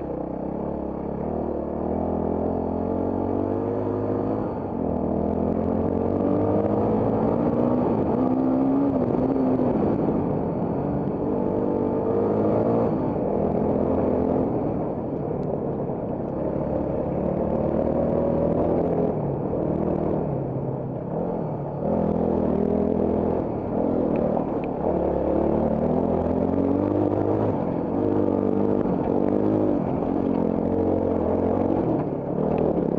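Trail motorcycle engine under way, its revs climbing again and again as the throttle is opened and dropping back between pulls.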